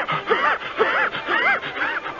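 A man's voice acting out hard, gasping breaths, a quick series of short voiced gasps, about two a second, the sound of someone running out of breath.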